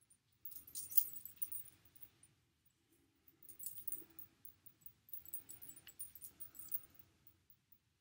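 Hands working through hair to braid it, making faint rustling with light metallic clinking from a charm bracelet on the wrist. It comes in two spells, one in the first second and a half and one from about three and a half to seven seconds in.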